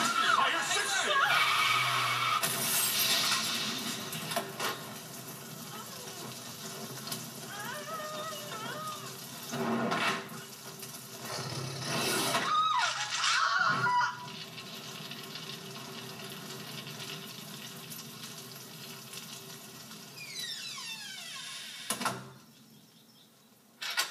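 Cartoon soundtrack of voices and shouts over music, with a few loud sudden hits and several falling glides about twenty seconds in.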